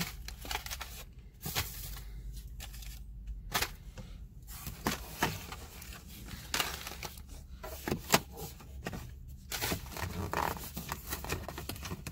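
Plastic shopping bags and packaging rustling and crinkling as items are handled, with scattered sharp clicks and knocks.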